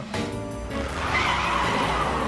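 Cartoon sound effect of a car speeding away: a rushing, skidding noise swells from about halfway in over a low rumble, with background music.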